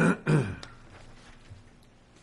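A man clearing his throat twice in quick succession, two short rough bursts right at the start; he is losing his voice.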